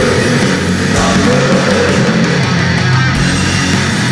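Black thrash metal played loud and dense: electric guitars and rhythm section driving on without a break.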